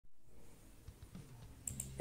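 Faint computer keyboard typing: a few light, scattered key clicks.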